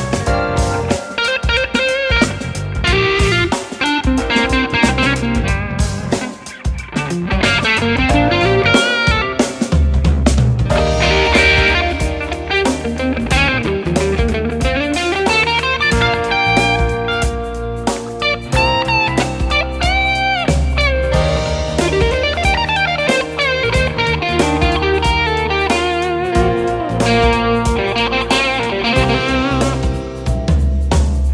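A Fender Custom Shop roasted-alder 1961 Stratocaster Super Heavy Relic played through an amp: blues-rock lead lines with string bends, in a crisp, crunchy tone. A bass line joins about ten seconds in.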